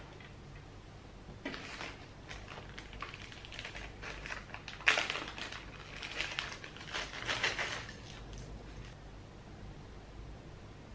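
Hands handling small trinkets and a clear plastic bag on a tabletop: irregular crinkling and rustling with light clicks of small hard objects, the sharpest click about five seconds in.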